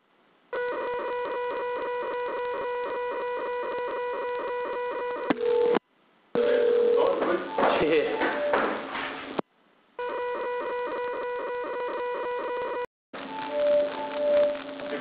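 Telephone line ringing tone: a steady pulsing electronic tone, cut off and resumed three times by short silences. A voice is faintly heard over the tone in the middle stretch.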